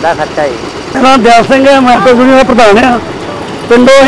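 A man talking, his voice louder from about a second in.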